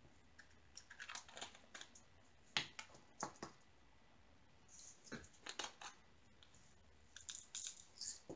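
Faint, scattered light clicks and taps of diamond painting: a drill pen picking up and pressing resin drills onto the canvas and small plastic drill pots being handled, coming in irregular clusters with a few sharper clicks a few seconds in.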